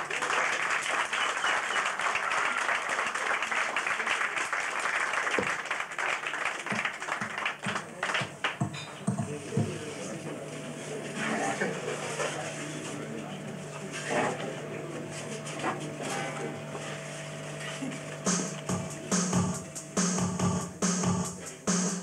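Audience applauding for several seconds, then a steady low hum with a murmuring crowd. About two seconds before the end, a drum-machine beat with electric bass starts.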